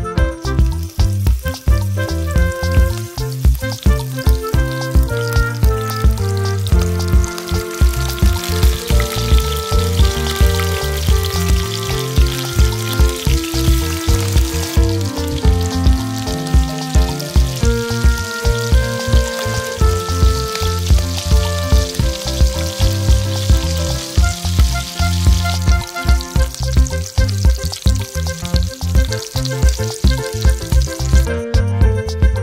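Hot oil sizzling as small whole bats fry in a nonstick frying pan. The sizzle grows stronger as the pan fills and eases off near the end, over background music with a steady beat.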